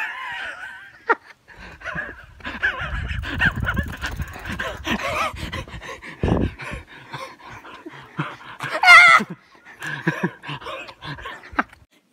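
A boy laughing and giggling in short, breathy bursts, with a loud high-pitched squeal of laughter about nine seconds in. A low rumble runs under the middle part.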